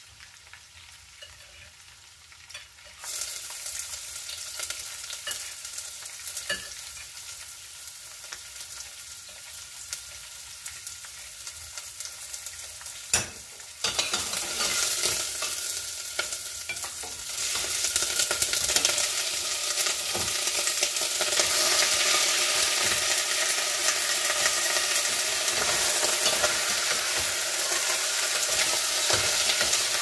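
Raw chicken pieces sizzling as they are dropped into a hot steel pot. The sizzling starts about three seconds in and grows louder in steps as more pieces go in, then stays steady. There is one sharp knock about halfway through.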